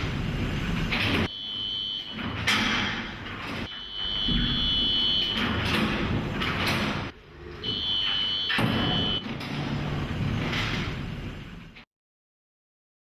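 Lift sounds from a film soundtrack: sliding doors and a low rumble, with a steady high buzzing tone that sounds about three times. It all cuts off suddenly near the end.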